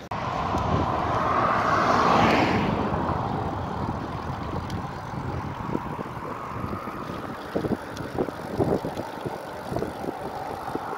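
Rushing wind and road noise on an action camera's microphone as a bicycle rolls along a mountain road, swelling to a loud hissing whoosh about two seconds in and then settling into a steadier rush with low buffeting.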